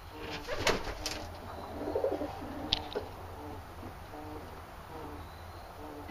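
Arabian trumpeter pigeons cooing: a steady run of short, low, soft coos, ordinary cooing rather than the breed's trumpeting. A few sharp knocks or scuffles come about a second in and again near three seconds.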